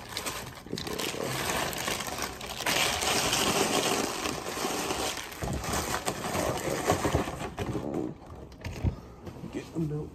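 Plastic cereal-bag liner crinkling and rustling as dry cereal is shaken out of it into a bowl, then a cardboard cereal box being handled, the noise dropping off about eight seconds in.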